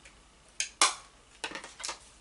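A few sharp clicks and clacks of hard makeup packaging being handled and set down, the loudest a little under a second in.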